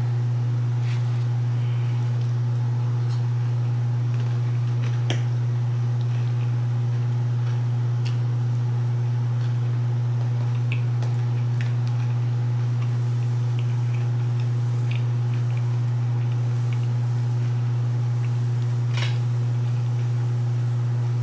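A steady low electrical or motor hum, unchanging throughout, with a few faint scattered clicks and taps; the clearest tap comes about five seconds in.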